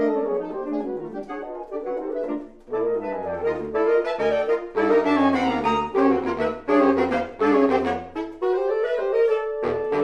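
Saxophone quartet of soprano, alto, tenor and baritone saxophones playing a piece together in close harmony. The level dips briefly about a quarter of the way in, then the baritone's low bass line comes in under the upper voices for most of the rest.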